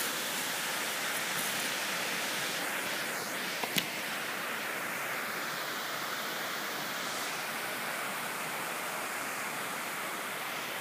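Steady rushing noise of running water, even throughout, with a single short click a little under four seconds in.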